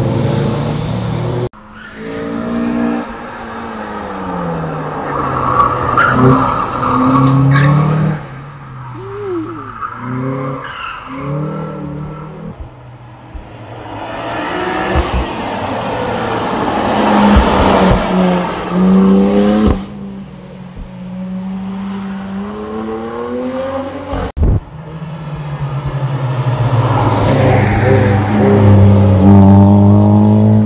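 Several cars pass one after another, driven hard. Their engines rev up and drop back through the gears, each swelling as it nears and fading as it goes. The sound breaks off abruptly twice where separate passes are joined.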